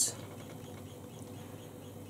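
Faint steady hiss with a low hum: quiet room tone between words.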